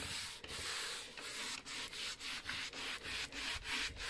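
Cloth rubbing clear furniture wax into a chalk-painted tabletop: a scratchy hiss in repeated back-and-forth strokes, coming quicker in the second half.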